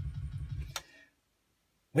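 Pioneer CDJ-2000NXS2 paused, repeating the last fraction of a second of the track over and over as a rapid, even bass stutter. It cuts off suddenly just under a second in.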